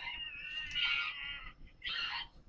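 A high-pitched, drawn-out meow-like call lasting about a second and a half, then a short break before another short call at the end.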